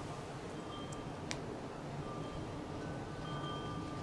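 Faint chime-like ringing tones at a few different pitches, coming and going over a low steady background, with a single sharp click about a second in.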